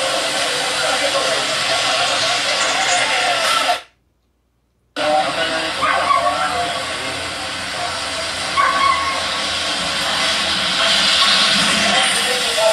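Steady hiss-like outdoor noise with indistinct voices, broken about four seconds in by roughly a second of dead silence at a cut in the recording, after which the noise and voices resume.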